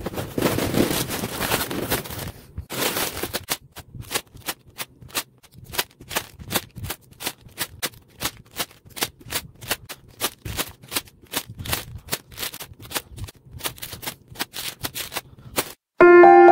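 A cardboard box being opened with a rustle, then plastic bags of LEGO pieces rattling and crinkling as they are set down on a wooden table: a rapid run of sharp clicks, about four to five a second, that stops suddenly near the end.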